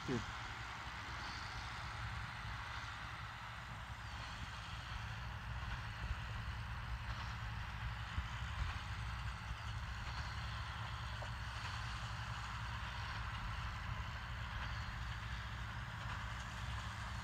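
John Deere 8320 tractor pulling a large square baler through the field, heard as a steady low engine hum.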